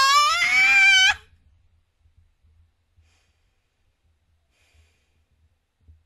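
A high-pitched voice holding one drawn-out, wordless cry that rises in pitch and cuts off suddenly about a second in.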